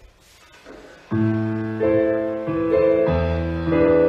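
Piano music for a ballet barre exercise starts about a second in: sustained chords that change roughly every second.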